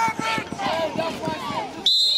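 Several voices shouting from the sideline, then near the end a referee's whistle cuts in with a single steady shrill blast, blowing the play dead as the runner is tackled.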